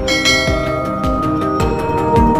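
Intro music with a steady beat of about two low thumps a second. A bright, bell-like chime rings in at the start.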